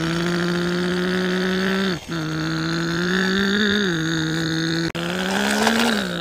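Truck-engine sound effect for a hand-pushed toy dump truck: a steady low engine drone that cuts out briefly twice. It rises slightly in pitch around the middle and again near the end, as if revving while the truck climbs.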